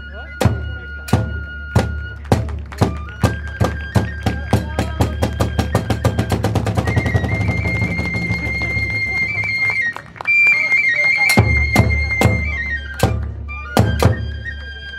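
Kagura festival ensemble: taiko drum strokes that speed up into a fast roll, under a flute holding long high notes. After a short break about ten seconds in, the drum and flute come back, and the flute stops just before the last drum strokes.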